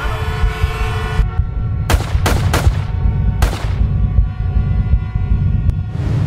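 Four sharp bangs, three in quick succession about two seconds in and a fourth about a second later, over a steady low rumble and held musical tones.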